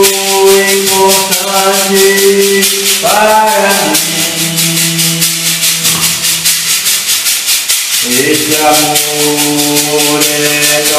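Handheld metal cylinder shaker shaken in a steady, even rhythm, over long sustained musical notes.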